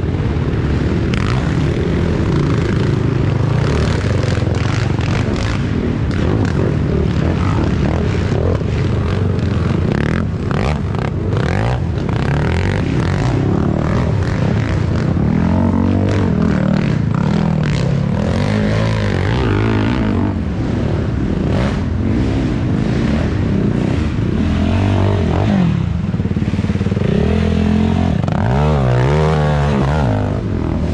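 Racing ATV engines revving up and down as several quads pass in turn, the pitch rising and falling with the throttle. The clearest swells of revs come in the second half and again near the end.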